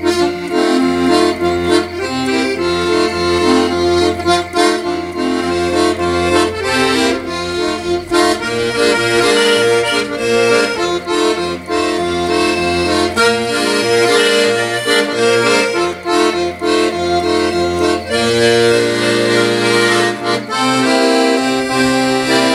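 Solo accordion playing an instrumental passage: a melody of held notes over steady bass notes, with the bass shifting to a new note about three-quarters of the way through.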